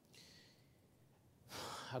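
A man breathing into a microphone during a hesitant pause: a faint breath just after the start, then a louder sigh about a second and a half in, right before he speaks again.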